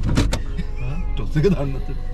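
Two sharp clicks in quick succession inside a car cabin, then a man talking, over a steady low hum.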